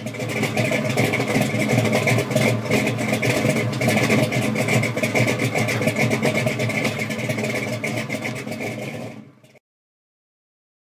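A car engine running loudly and steadily, which cuts off abruptly shortly before the end.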